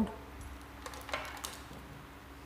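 A few light clicks and a brief rattle about a second in, from hands handling the plugged patch leads and knobs of an electronics trainer board, over a faint steady hum.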